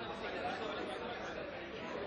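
Indistinct background chatter of several voices mixed with a steady ambient din; no single voice stands out.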